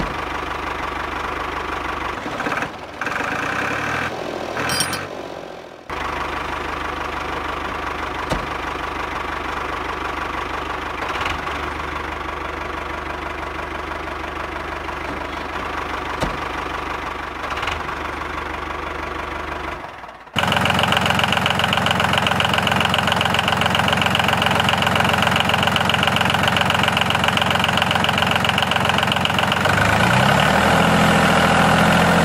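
Tractor engine running steadily, broken by short cuts a few seconds in; about twenty seconds in it switches abruptly to a louder engine run.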